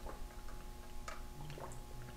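A few faint clicks over quiet room tone, with someone sipping through a straw from a plastic tumbler.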